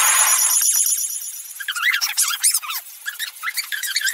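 Cartoon soundtrack played back at four times normal speed. It opens with a shrill blast of noise for about a second, then turns into rapid, high-pitched, squeaky chatter of sped-up voices.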